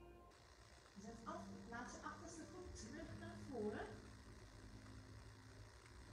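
Quiet, indistinct woman's voice speaking softly, over a faint steady room hum.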